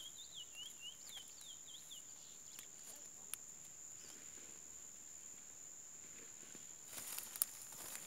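A curió (chestnut-bellied seed finch) gives a quick run of short, hooked chirps, about four a second, that stops about two seconds in. A steady high insect buzz carries on underneath, and a few light clicks come near the end.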